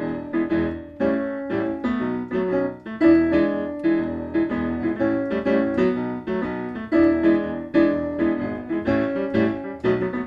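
Instrumental break of a filk song played on a piano-like keyboard: a busy run of notes, with a loud phrase coming back about every two seconds and no singing.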